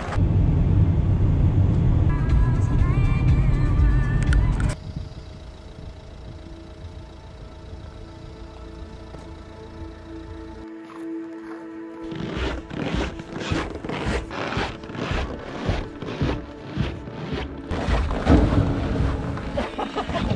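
Background music: first over a loud low rumble of a car driving, which cuts off suddenly after about four and a half seconds, then quieter held notes, then a steady beat from about twelve seconds in.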